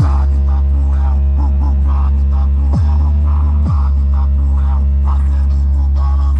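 Bass-heavy electronic hip hop music played loud through a custom sound box with a Rex subwoofer, horn drivers and tweeters. A deep, heavy bass runs steadily underneath, with two bass notes sliding steeply down about three and four seconds in.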